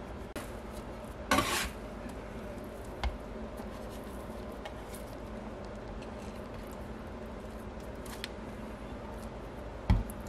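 Metal bench scraper scraping through wet porridge bread dough against the countertop about a second in, then soft handling of the sticky dough on a plastic kitchen scale, with a short knock about three seconds in and a sharp tap near the end.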